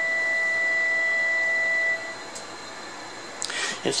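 A recorded violin note played back through a 300B single-ended triode amplifier: one steady held note with a strong overtone above it, cutting off about two seconds in.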